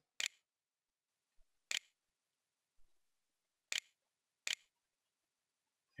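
Four short, sharp clicks, unevenly spaced one to two seconds apart: the Windows 7 On-Screen Keyboard's key-press click sound, one for each letter typed.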